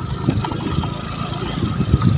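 Small motorcycle engine running steadily at low speed over a rough dirt track.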